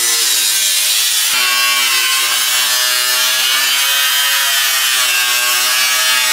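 Electric angle grinder cutting through a car's steel wheel-arch panel: a steady whine over a loud hiss. The pitch wavers a little as the disc is pushed into the metal, with a brief break about a second in.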